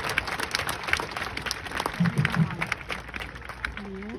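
Audience applauding, the claps thinning out toward the end.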